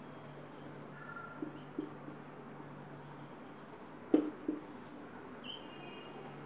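A steady, high-pitched chirring trill with a low hum beneath it. A few light knocks of a marker on the board come about one and a half and four seconds in; the one at four seconds is the loudest.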